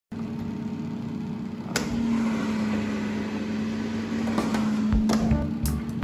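Philips HD9220 air fryer running: a steady fan hum with a constant low tone. A few sharp clicks and low knocks come from handling its basket handle, the loudest a little before the end.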